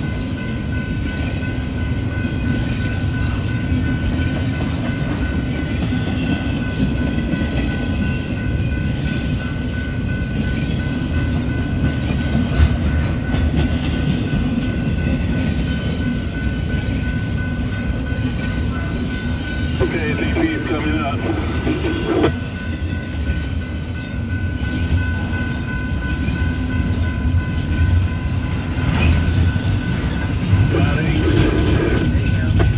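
Steady rumble of a Union Pacific coal train, with a thin constant whine over it. About twenty seconds in, a short rising sound joins briefly and cuts off sharply.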